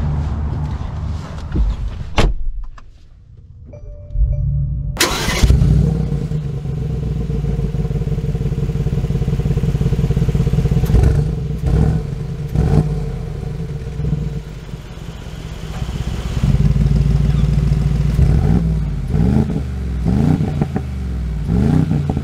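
Mercedes-AMG G63's twin-turbo V8 starting about five seconds in, then idling and being revved several times, with quick rising revs near the end. A single thump about two seconds in.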